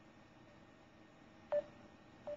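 Short electronic call beeps from an internet calling app redialling a dropped call, repeating at a steady pace of about one every three-quarters of a second. One beep about one and a half seconds in is louder and starts with a click.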